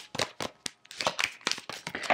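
Tarot cards being shuffled by hand: a quick, irregular run of soft card clicks and slaps, about six a second.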